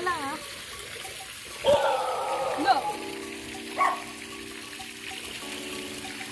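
Pool fountain water splashing steadily, with a few brief voices over it. From about three seconds in, a steady held musical tone joins it.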